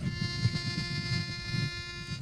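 A pitch pipe blown once: one steady reedy note held for about two seconds over a low rumble, giving a vocal group its starting pitch.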